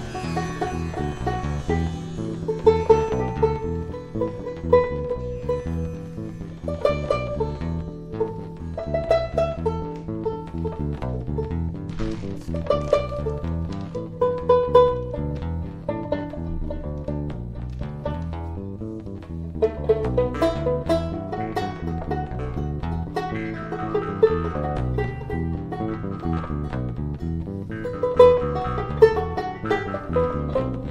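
Banjo picking a melody of quick plucked notes over a bass line.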